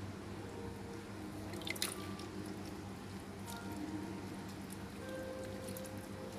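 Liquid dripping and small splashes as a hand works in a drum of fermenting jakaba bran culture, with a couple of sharp clicks about two seconds in, over a steady low hum.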